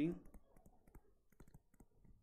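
Faint, irregular clicks of a stylus tip tapping on a tablet screen during handwriting.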